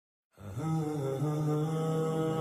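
A single man's voice chanting a slow melody in long held notes, starting a moment after silence.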